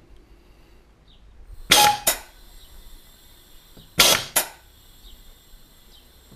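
MPS Technology C2 air-driven gas booster cycling while it fills a cylinder toward 220 bar: a pair of sharp puffs about half a second apart, repeating about every two and a half seconds, twice here, as the drive air exhausts at each piston stroke.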